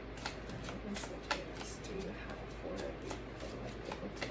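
A deck of oracle cards being shuffled by hand: irregular crisp card clicks and slaps, two or three a second, one sharper slap about a second in.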